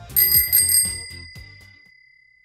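Short intro jingle: music with a bright bell ding just after the start that rings on and fades away over about two seconds as the music stops.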